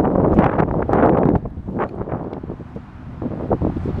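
Wind buffeting a handheld camera's microphone, loudest for the first second or so and then easing, with a few short knocks from handling.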